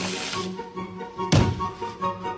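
Background music playing, with one short, loud thump about one and a half seconds in.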